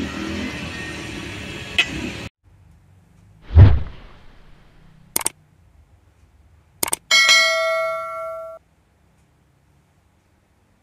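Steady outdoor background noise that cuts off abruptly about two seconds in. It gives way to subscribe-button animation sound effects: a loud low whoosh, two sharp clicks, then a bell chime ringing for about a second and a half before stopping.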